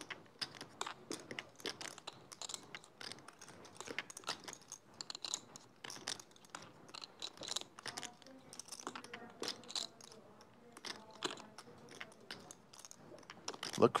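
Clay poker chips clicking together as they are handled and riffled at the table: an irregular run of small, sharp clicks, fairly quiet.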